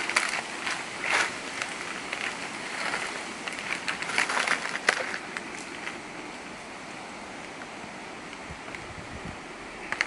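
Footsteps crunching on dry leaf litter and coral rubble, a handful of irregular crisp crunches in the first half, over a steady outdoor hiss that settles and quietens in the second half.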